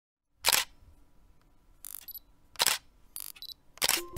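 Camera shutter firing three times, with quieter mechanical sounds between the shots.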